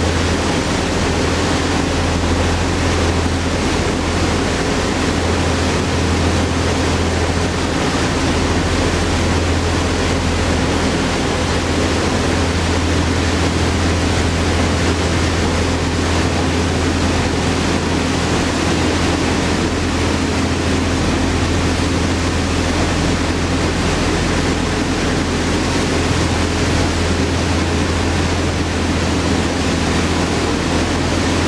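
A passenger boat running at cruising speed: the steady low drone of its engines over the rushing noise of its churning wake and the wind.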